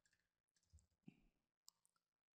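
Near silence: room tone with two faint, short clicks, one about a second in and one about half a second later, typical of a computer mouse.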